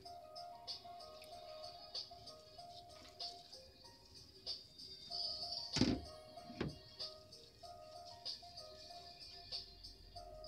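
Background music with held notes, and two dull knocks close together a little past the middle.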